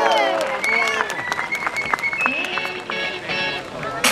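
Show music playing over outdoor loudspeakers, with a sung note fading out in the first half-second, and the crowd clapping along in many sharp claps.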